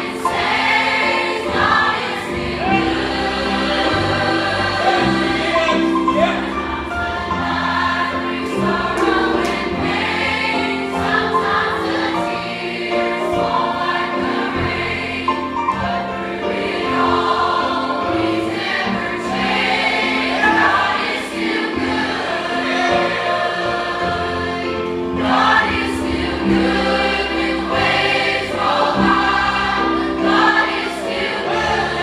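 Teen choir of mixed voices singing a gospel song over a steady, low instrumental backing.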